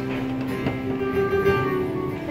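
Three acoustic guitars playing a song together live, with no singing in this passage.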